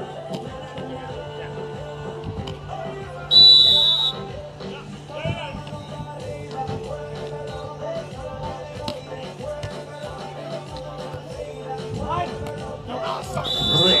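Background music plays throughout, with a steady low note under it. A referee's whistle blows once, short and loud, a little over three seconds in as the serve is signalled, and again near the end as the rally ends.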